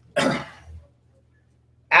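A man clears his throat once in a short, loud burst.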